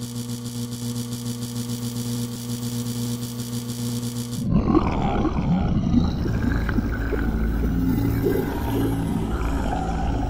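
Sound effect of a robot's laser firing: a steady, pulsing electric buzz that stops abruptly about four and a half seconds in. A rougher, noisy low rumbling sound effect follows.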